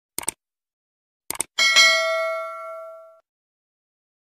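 Click sound effects, a quick double click and another about a second later, then a bell ding that rings out and fades over about a second and a half: the click-and-notification-bell chime of a subscribe-button animation.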